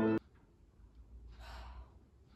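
Violin music cuts off sharply just after the start. It is followed by quiet room tone and one soft, breathy sigh about a second and a half in.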